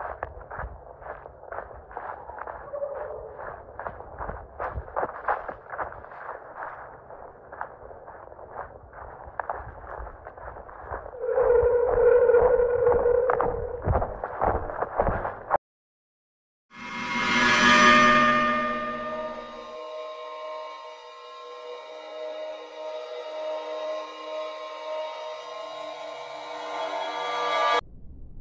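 Footsteps crunching through dry leaf litter, about two steps a second, with handheld camera noise; the sound gets louder for a few seconds near the middle. After a sudden cut to silence, a gong-like swell rises and fades into a sustained drone of several steady ringing tones that runs to the end.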